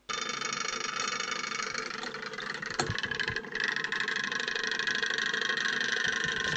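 Magnetic stirrer hotplate running, spinning a stir bar in a flask of liquid: a steady motor whine of several tones. The pitch shifts about halfway through, and there is one brief knock a little before that.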